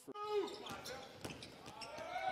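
Basketball bouncing repeatedly on a hardwood court during live play, with arena voices in the background.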